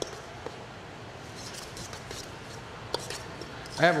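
Ground meat being mixed by hand in a stainless steel bowl: soft squishing over a steady hiss, with a few light clicks against the metal.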